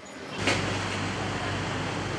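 Steady hum and hiss of a bakery's bread oven running, with a single knock about half a second in as a wooden peel handles the loaves.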